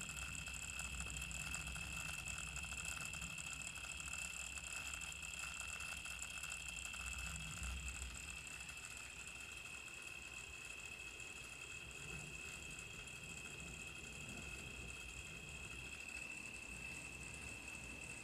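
A faint, steady high-pitched electronic whine over a low hum, unchanging throughout.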